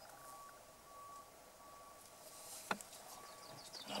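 Quiet rural outdoor ambience with a faint thin tone that comes and goes, and a single sharp click about two-thirds of the way through.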